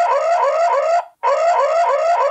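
The S-link SL-IND04 Wi-Fi security camera's built-in siren sounding, switched on from its phone app: a rapid run of short rising whoops, about five a second, with a brief break about a second in before it starts again. It is the camera's deterrent alarm, meant to scare off an intruder.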